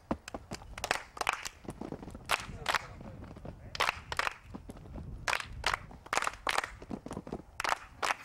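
Children clapping their hands: a run of sharp, separate claps, often in pairs, over faint background chatter.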